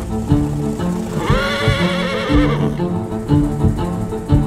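A horse whinnies once about a second in, a wavering call of about a second and a half, over steady bowed-string music.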